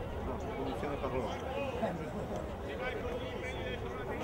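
Indistinct background chatter: several voices talking at once at a moderate, steady level, with no clear words.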